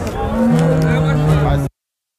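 A bull mooing: one low, steady call of about a second that cuts off suddenly near the end.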